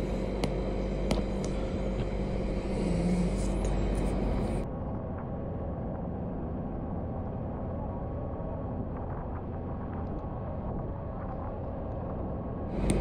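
Water noise from swimmers in a sea cave, with a few sharp clicks. About four and a half seconds in it gives way to the steady engine and water rush of a motorboat running fast over the sea.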